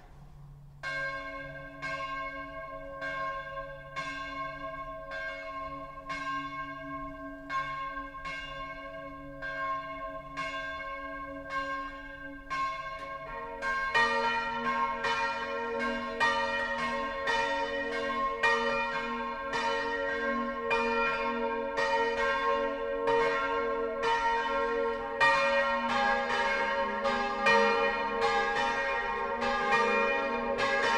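Swinging church bells starting their full peal. One bell strikes about once a second, each stroke ringing on; about 13 s in, further bells join and the peal grows louder and denser, with the strokes overlapping.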